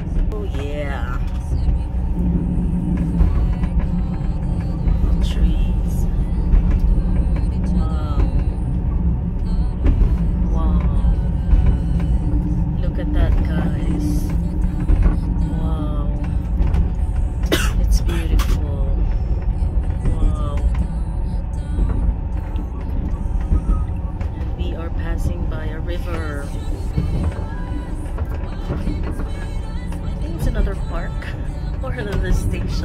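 Steady low rumble of a train running along the track, heard from inside the carriage, with background music carrying a singing voice over it. A few sharp clicks come a little past halfway.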